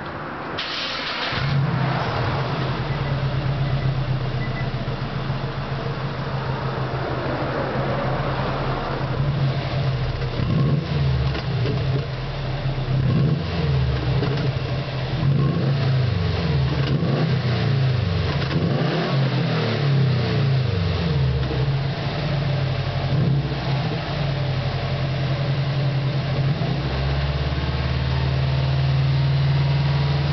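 A 2010 Subaru WRX's turbocharged flat-four (boxer) engine starts about a second in and idles, then is revved repeatedly before settling back to idle near the end. It is heard at the tailpipe with a washer spacer opened between the muffler and the pipe, so exhaust bypasses the muffler and the car sounds louder than stock.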